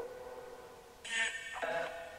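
Necrophonic ghost-box app playing through a phone's speaker: chopped, pitched sound fragments with echo. A held tone fades over the first second, then new fragments start and cut off abruptly about a second in and again just before the end.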